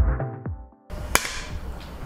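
Electronic intro music with a kick-drum beat about twice a second, dying away before a second in. A single sharp click about a second in, then a low steady room hum.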